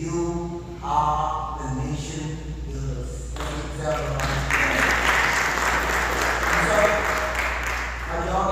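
A man's voice speaking for about three seconds, then a church congregation applauding, which swells a second later and keeps going.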